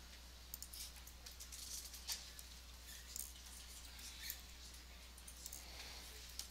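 Faint, scattered clicks and taps of a computer mouse being clicked and moved while guide lines are placed in a drawing program, over a low steady hum.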